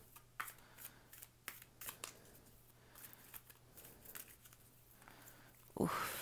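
Tarot deck being shuffled by hand: faint, irregular soft snaps and flicks of the cards.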